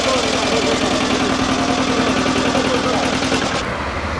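An engine idling with a rapid, even knock, under people's talk. The sound changes abruptly near the end, its hiss dropping away.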